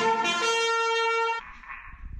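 Pocket trumpet blaring one loud, held note, which cuts off about a second and a half in.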